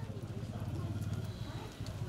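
A pause in a man's amplified speech: faint, low background noise of the outdoor gathering, with no clear event.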